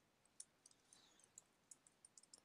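A few faint, irregular clicks of computer keyboard keys being typed, over near silence.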